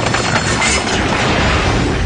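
Cartoon sound effects: a loud, steady rumbling clatter, like a ride car racing along a track.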